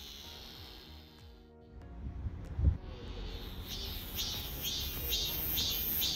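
Cicada singing: a rhythmic pulsing call, about three pulses a second, that grows louder through the second half. A low thump comes about two and a half seconds in.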